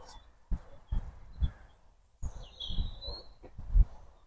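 A bird gives one short, gliding chirp about halfway through, over a few soft low thumps and rumbles.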